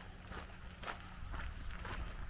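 Footsteps of a person walking at a steady pace on a dirt track, each step a short crunch, over a low rumble.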